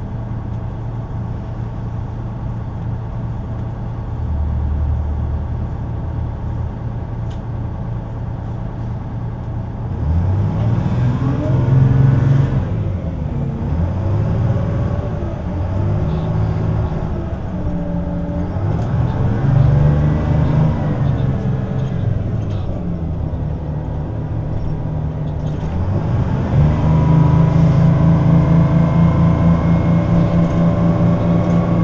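Inside a moving city bus: a steady low engine and road drone. From about ten seconds in, the engine's pitch repeatedly climbs and drops as the bus accelerates and changes gear, and near the end it settles into a louder, steady drone.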